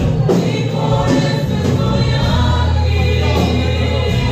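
Mixed choir of men and women singing a Spanish-language hymn with guitar accompaniment, sustained chords over a steady bass line.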